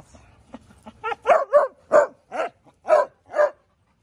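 A dog barking, about seven short barks in quick succession starting about a second in.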